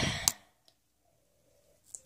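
Near silence with a single short, faint click near the end.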